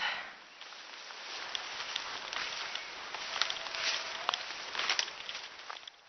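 Footsteps and rustling through woodland undergrowth, with scattered short sharp crackles from about a second and a half in.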